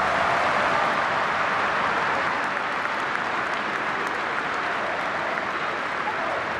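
Large stadium crowd applauding steadily.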